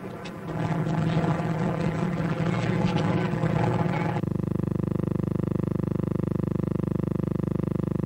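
A steady engine-like drone with a fast, even beat. It sets in abruptly about four seconds in, replacing a busier mix of noise and tones.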